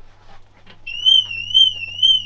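BMW M3's anti-theft alarm going off about a second in: a high, warbling siren tone that rises and falls about twice a second. The car is being raised on a floor jack, and that trips the alarm.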